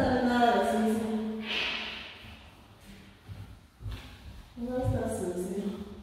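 A person's voice making drawn-out sounds without recognisable words, in two stretches, with a brief hiss in between.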